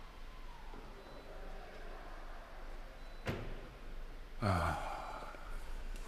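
A man's heavy sigh, falling in pitch, about four and a half seconds in, preceded about a second earlier by a single sharp knock. A low steady hum runs underneath.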